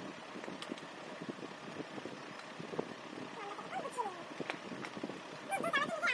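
Mostly low room noise, with a few soft voice sounds about four seconds in and a girl's speech starting near the end.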